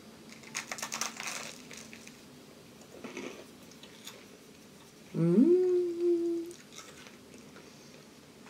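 Crunching bites and chewing of a crisp toasted cheese sandwich, then about five seconds in a woman's closed-mouth "mmm" of enjoyment that rises in pitch and is held for over a second.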